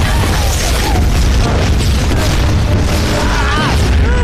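Film explosions: a loud, continuous low rumble of blasts, with a music score underneath.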